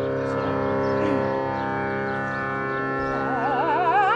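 A steady Indian classical drone of tanpura and harmonium holding its notes, with a female voice entering about three seconds in, singing a wavering, ornamented phrase that climbs in pitch.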